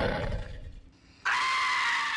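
A music cue dies away, then after a moment's silence a person lets out a loud, high-pitched scream, held on one steady pitch.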